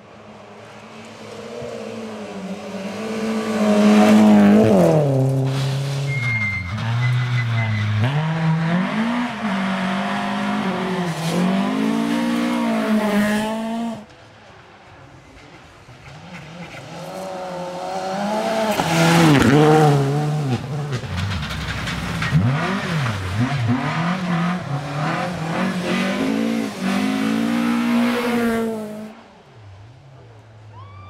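Two rally car engines, one after the other, driven hard on gravel. Each revs up and down through gear changes and lifts and is loudest as the car passes close. The first cuts off abruptly about halfway through, and the second rises and passes in the second half.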